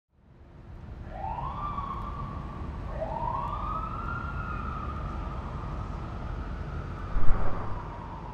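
Police siren wailing over a steady low rumble: two rising wails, the second held and slowly falling away, then a short low thump near the end.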